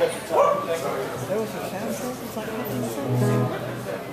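Amplified electric guitar sounding a few held low notes near the end, with voices and a short shout early on.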